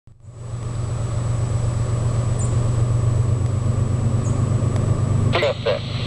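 Low, steady rumble of an approaching diesel freight train's locomotives, not yet close.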